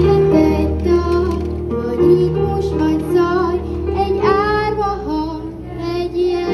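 Schoolchildren singing a song through stage microphones, a girl's voice carrying the melody over instrumental accompaniment with sustained low notes.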